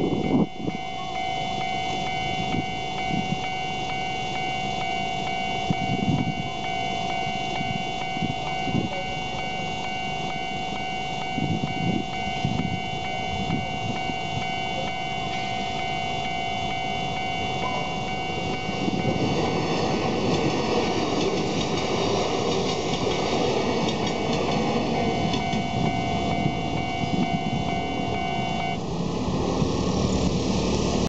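Electronic warning bell of a railway level crossing sounding steadily, with a train passing over the crossing from about 19 s in. The bell cuts off suddenly near the end.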